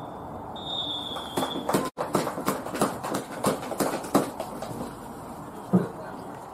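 Referee's whistle blowing for half time: a short blast, then a long final blast that ends about two seconds in. Then sharp hand claps at about three a second for a couple of seconds, and a single thump near the end.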